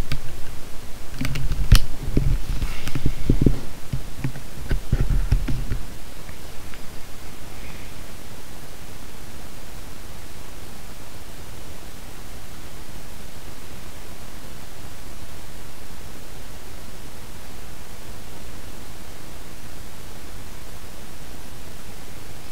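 Scattered clicks and low knocks from a computer keyboard and mouse being worked at a desk during the first six seconds or so, then only a steady hiss.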